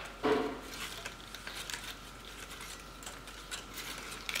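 Quiet handling of a paper and cardboard craft: faint rustles and small taps as paper wings are pressed back onto a cardboard-tube body, with one brief louder sound near the start.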